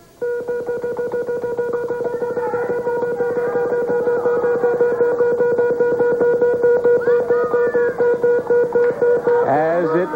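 The Price is Right Big Wheel spinning, its pegs clicking rapidly against the pointer flapper, over a steady tone. Audience voices call out over the clicks.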